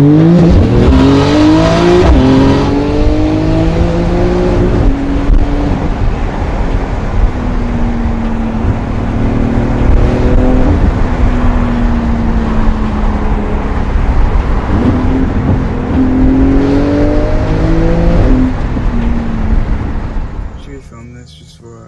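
A Porsche sports car's engine heard from inside the cabin, pulling hard through the gears: its pitch climbs and drops back at each gear change, several times, with a stretch of steadier, slowly falling pitch in the middle.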